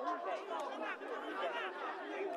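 Overlapping voices of several people talking and calling out at once, heard as background chatter on the pitch.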